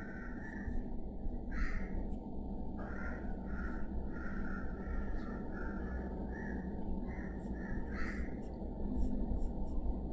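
Graphite pencil scratching on drawing paper in a run of short strokes, several a second with brief gaps, over a steady low background hum.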